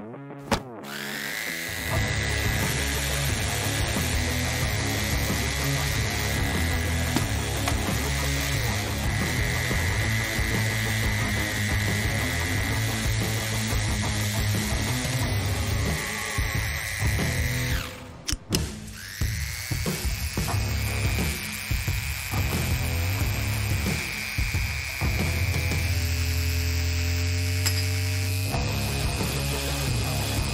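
Handheld rotary tool with a cut-off wheel spinning up with a rising whine and running at a high steady pitch as it cuts through a die-cast metal toy car body. It winds down about two-thirds of the way through, then spins up again to a slightly higher pitch and keeps cutting.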